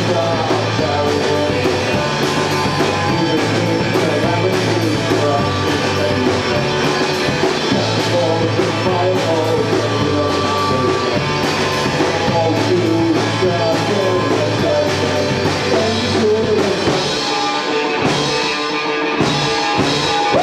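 Rock band playing live: two electric guitars, bass guitar and drum kit, with a steady drum beat and sustained bass notes. The high end thins out briefly near the end.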